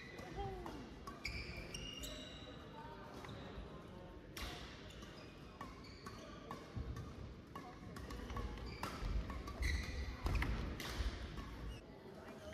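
A badminton rally: a string of sharp racket strikes on the shuttlecock, scattered unevenly, mixed with quick footwork on the court floor. The sounds are fairly faint and come from a distance.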